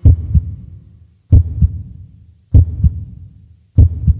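Heartbeat sound effect: four deep double thumps, lub-dub, repeating about every one and a quarter seconds.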